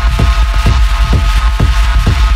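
Techno track: a kick drum hitting about twice a second in a steady four-on-the-floor beat, each hit a quick downward thud, over a heavy sustained bass and a steady high drone.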